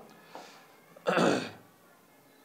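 A man clears his throat once, about a second in, with a faint breath just before it.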